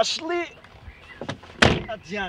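A car door slamming shut: one heavy thud about one and a half seconds in.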